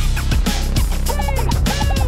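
Heavy metal music: a distorted, drop-D-tuned Dean electric guitar playing a riff over the backing track's drums and bass. About halfway through, a warbling run of short high notes with arching pitch glides comes in on top.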